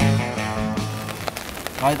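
Background rock music with guitar that fades out within the first second. Then steady rain falls on a tarp.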